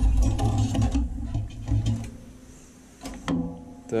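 Quick clicks, taps and low knocks of a painted steel moped frame and mudguard being handled on a workbench, busiest in the first two seconds, easing off, then a few more clicks just after three seconds.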